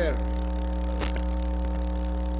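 Steady electrical mains hum from the chamber's sound system, with a single sharp click about a second in.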